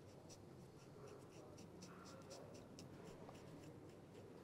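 Faint scratching of a felt-tip marker drawing on a small paper flag, a run of short, irregular strokes.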